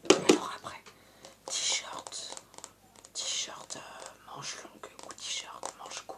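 Close-up ASMR whispering in French, in short breathy phrases, with a few sharp clicks at the very start.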